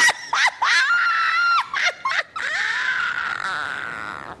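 A woman's high-pitched, theatrical witch-like vocalizing: a few short shrieks, then one long drawn-out shrill cry that fades near the end.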